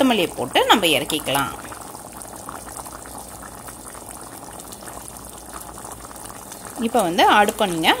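Pot of goat leg soup at a rolling boil, its bubbling a steady, even noise, with talking in the first second or so and again near the end.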